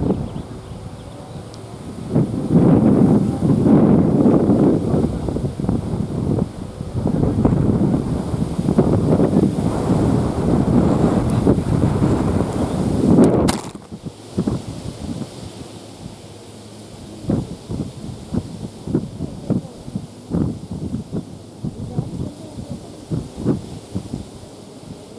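Wind buffeting the camera microphone in a loud, gusting rumble for about ten seconds, ending with a single sharp knock a little past halfway. After the knock, quieter wind noise with many short taps and bumps.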